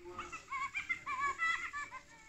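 Fingerlings interactive baby monkey toy chattering from the small speaker in its head, set off by touch: a quick run of short, high-pitched, wavering babbling syllables that stops near the end.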